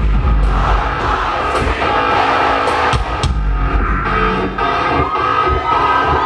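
Live rock band playing loudly, with heavy bass and drum hits, as heard from inside the audience.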